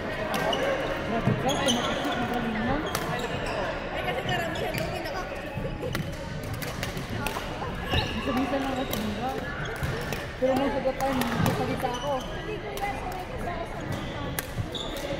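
Badminton play: scattered sharp racket hits on the shuttlecock and footfalls on a wooden court, under the chatter of several voices.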